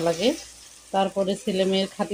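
A woman talking in two stretches, with a faint sizzle of cooking on a gas stove beneath her voice.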